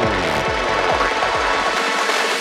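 Psychedelic trance music: a rapid, driving kick and bass pulse under synth layers and rising sweeps. The kick and bass drop out near the end, leaving only the upper synths.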